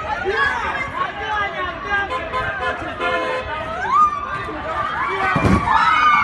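Crowd of bystanders outdoors, many voices shouting and talking over one another. About four seconds in one voice rises into a loud cry, and near the end several voices hold long, high cries.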